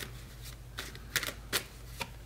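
A tarot deck being shuffled by hand: a few short, sharp card snaps, mostly in the second half.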